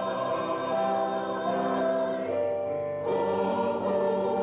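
Church choir singing a cantata piece in parts, holding long notes together; the sound thins out briefly about two and a half seconds in, then the voices come back fuller about three seconds in.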